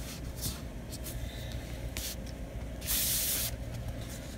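Hands rubbing and smoothing paper over chipboard: a few short swishes, then a longer, louder swish about three seconds in as the paper-covered board is slid and handled, over a steady low hum.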